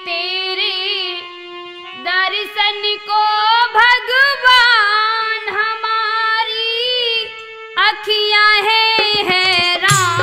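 A woman singing devotional folk verse over a harmonium, which holds a steady note beneath her voice as it bends and wavers through long sung phrases.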